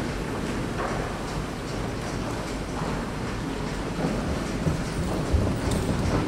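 Church room noise with shuffling movement and soft footsteps on the floor, and a few soft low thumps in the second half.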